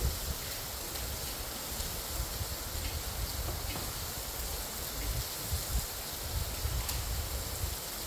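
Steady outdoor background noise: a low, uneven rumble under a constant hiss.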